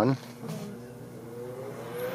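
Cooling fan of a Lakhovsky multiple wave oscillator starting up as the unit is switched on: a steady whirring hum that grows slowly louder.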